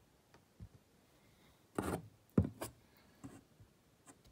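A few soft knocks and rubbing sounds from a small diecast model plane and the phone filming it being handled, the loudest a short knock about two and a half seconds in.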